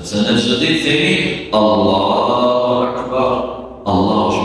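A man's voice reciting in a drawn-out, chant-like intonation, close to the microphone, in two long phrases with a short break about one and a half seconds in.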